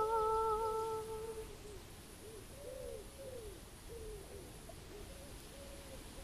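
The final note of a banjolele song held and fading out over about a second and a half, a steady wavering hummed or sung tone over the instrument's last chord. Then faint, short arching tones for a few seconds.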